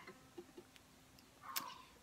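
Near silence with a few faint ticks from fingers pressing ukulele strings onto the fretboard as a C chord is formed, and a faint low note held for about a second.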